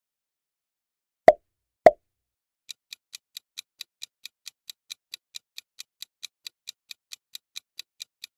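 Two loud pop sound effects about half a second apart, then a quiz countdown timer ticking evenly at about four and a half ticks a second while the answer time runs.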